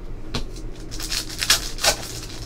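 A stack of baseball trading cards being shuffled through by hand, the cards sliding and rubbing against each other in a few quick strokes. The loudest stroke comes near the end.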